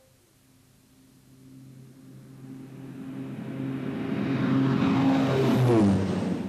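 A motor vehicle approaching, its engine note growing steadily louder, then passing close by near the end with a sharp drop in pitch.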